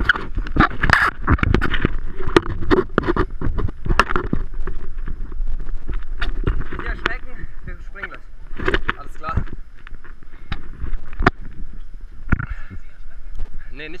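Irregular knocks and clanks of shoes and hands on a steel crane ladder and grating steps during a climb, with voices talking in the background.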